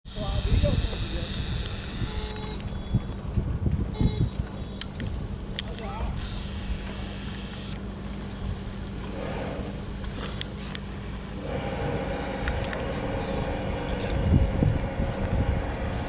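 Waterfront ambience: wind rumbling on the microphone, distant voices, and a steady low mechanical hum, with a second steady tone joining about two thirds of the way through.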